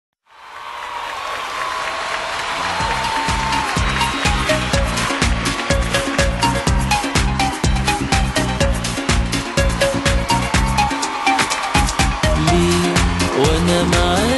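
Instrumental intro of an Egyptian Arabic pop song: it fades in with a swelling wash of sound, then a steady drum-and-bass beat kicks in about three seconds in and carries on, with a brief break in the bass near the end.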